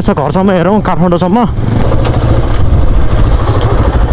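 Motorcycle engine running steadily at low speed, with rumble and road noise from riding over a rough dirt track. A man's voice talks over it for about the first second and a half.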